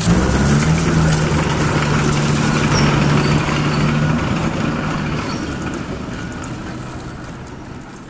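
Heavy machine engine rumble with a mass of coins jingling and sliding, loudest at the start and fading away over the last few seconds.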